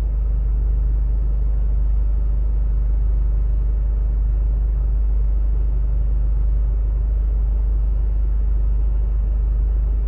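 Steady low rumble of a car idling, heard from inside the stationary car's cabin.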